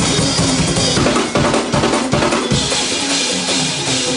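Gospel praise-break music played loud by a live church band, driven by a fast drum kit with bass drum and snare hits, with a run of hard drum strikes in the middle.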